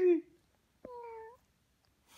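Young infant cooing: a high-pitched coo falling in pitch that ends just after the start, then a second short coo about a second in.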